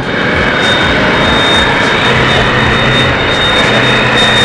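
Steady rush of wind on the microphone of a moving motorcycle, with the engine running underneath and a thin, steady high whine.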